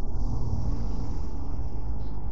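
Steady low background rumble with a faint hiss above it, unchanging throughout.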